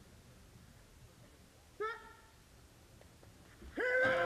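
Quiet start area with one short, rising shouted call about two seconds in, then loud, sustained yelling from several voices breaking out near the end as the two-woman bobsled crew begins its push start.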